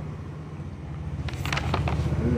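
A low engine hum with an even pulsing beat, growing louder through the second half, with a few light clicks near the end.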